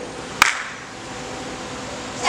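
A pause between a school choir's sung phrases: low hall room noise with one sharp click about half a second in.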